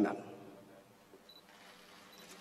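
A man's announcement ends with its last word dying away in the hall's echo, then only quiet room tone of a large hall full of waiting people.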